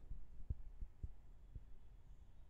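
Four soft, low thumps in the first half and middle, over a faint low hum.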